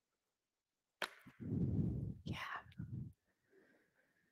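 A click about a second in, then a long, breathy exhale close to the microphone with a soft spoken "yeah" in it, quieter than the spoken cues around it.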